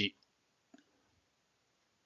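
Tail end of a spoken word, then near silence broken by one faint, short click about three-quarters of a second in.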